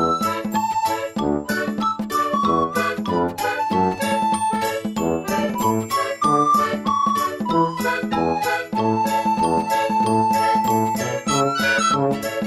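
Instrumental background music with quick, bright chiming notes over a steady beat.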